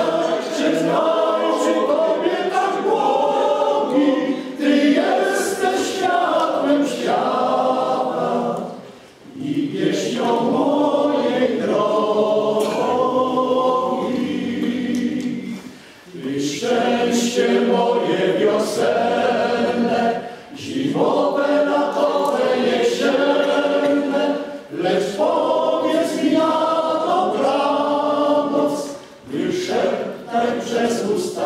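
Male choir singing unaccompanied in several voice parts, in long sustained phrases with brief breaks between them, about 9, 16 and 20 seconds in and again near the end.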